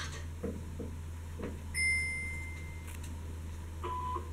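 Electronic beep from a recorded German listening-test audio played over a speaker: one steady high tone about a second long, a little under two seconds in, and a short lower beep near the end. A steady low hum from the playback runs underneath.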